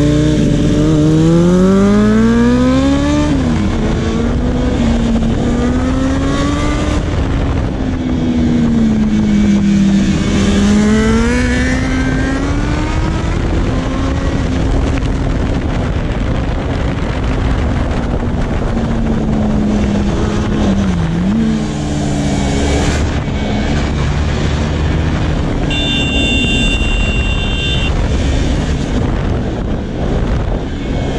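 KTM Duke 390's single-cylinder engine heard from on board at speed, with rushing wind. It revs up hard at first and drops in pitch with a gear change about three seconds in, then keeps rising and easing as the throttle is worked through the bends.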